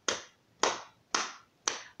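Four sharp, evenly spaced hand beats, about two a second, each dying away quickly, keeping a walking beat in a children's chanted action rhyme.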